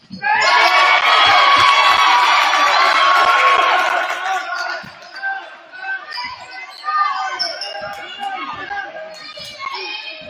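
Gym crowd cheering and shouting for about four seconds after a made basket, then settling to scattered voices with a basketball bouncing on the hardwood floor.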